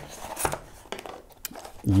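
Cardboard packaging handled by hand: a small box tray slid out of its sleeve and its lid opened, with a few short sharp clicks and rustles of card.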